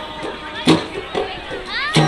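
Folk dance music: a drum beating strongly at intervals, with voices calling and singing over it and a rising call near the end.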